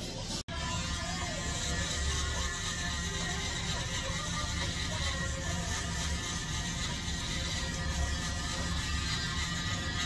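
Electric hair trimmer buzzing steadily as it cuts and lines up the hair at the back of the neck, with music playing in the background.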